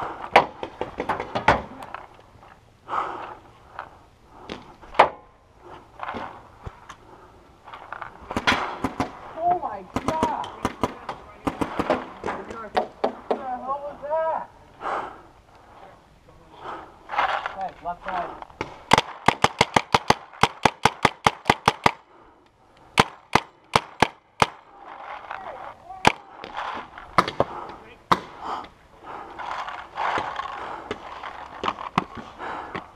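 Paintball markers firing: scattered sharp pops throughout, with a rapid string of about seven shots a second for roughly three seconds past the middle.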